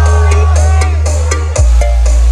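Loud dance music played through a large outdoor sound system with a full set of 24 subwoofers, dominated by a heavy held bass that changes to a new note about one and a half seconds in, under a bending melody line.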